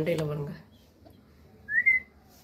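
A short vocal sound, then near the end a brief, clear, rising whistle lasting about a third of a second, the loudest sound here.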